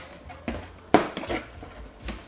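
Cardboard shipping box being pulled open by hand: a few short sharp rips and knocks of the taped flaps, the loudest about a second in.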